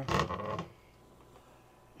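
A wooden cabin locker door unlatched and pulled open, a click and a short scrape in the first half-second, then near silence.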